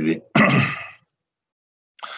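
A man coughing and clearing his throat: a short hack right at the start, then one louder, harsher cough about half a second in.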